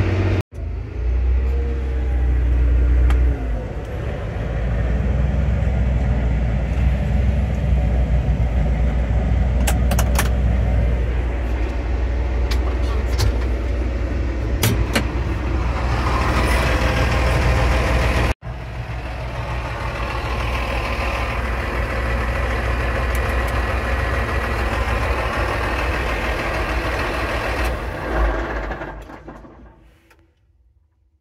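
John Deere 4955 tractor's six-cylinder diesel engine running steadily under load as a deep, low drone. The sound breaks off abruptly twice, about half a second in and about 18 seconds in, and fades out over the last couple of seconds.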